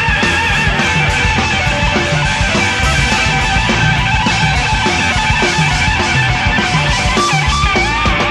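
Rock band playing live in an instrumental passage: electric guitar lines that bend and waver in pitch over bass and drums, with steady cymbal hits.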